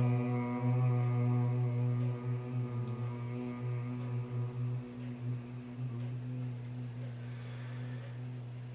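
Om meditation chant in low male voices, one long note held on a steady pitch. It closes into a hum after about two seconds and slowly fades.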